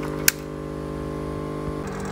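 Steady electrical hum, made of several even tones, with one sharp click about a third of a second in.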